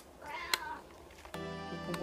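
A domestic cat meows once, a short call that rises and falls in pitch.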